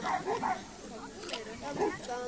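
A dog barking, a few short excited barks, while it runs an agility course alongside its handler.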